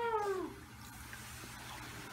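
Harbor seal pup giving one bleating call near the start that rises and then falls in pitch, followed by faint background noise.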